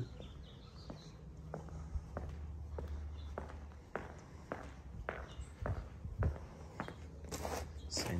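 Footsteps of a person walking steadily on a concrete patio, about two steps a second, over a low steady rumble.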